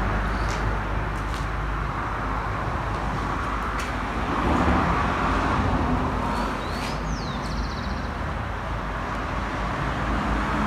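Steady outdoor background noise, a low rumble and hiss that swells a little about halfway through, with a few faint clicks. A bird gives a short high chirping call about seven seconds in.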